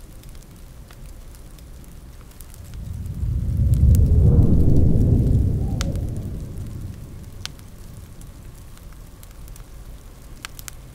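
A long rumble of thunder swells about three seconds in, peaks, and fades away over about four seconds. Under it runs a steady rain noise with the occasional sharp crackle of a wood fire.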